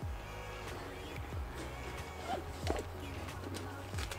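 Background music with a steady low bass line and a few soft, low hits.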